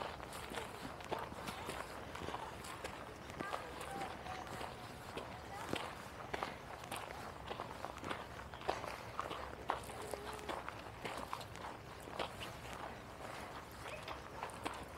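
Footsteps crunching on a leaf-strewn dirt trail, with faint distant voices.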